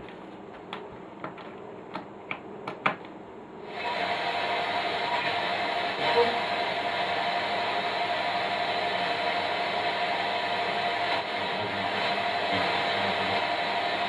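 A few light clicks of tools on the tuner chassis. About four seconds in, a steady hiss with faint whistling tones comes on and carries on: inter-station FM static from the Unitra T7010 tuner's output, now that its oscillator coil has been altered and the tuner is receiving again.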